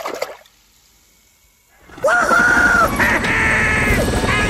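A toy helicopter splashes in a tub of water, the splash fading within half a second, then a short quiet gap. From about two seconds in, loud animated-film audio takes over, with long rising-and-falling cries over a continuous rush.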